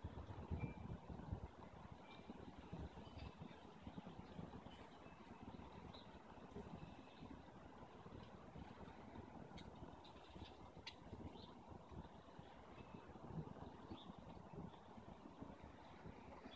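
Near silence: faint low outdoor background noise, with a few faint, short high-pitched chirps scattered through it.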